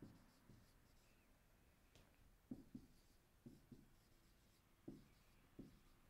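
Faint sound of a marker writing on a whiteboard: a scatter of short strokes, several in quick pairs, through the second half.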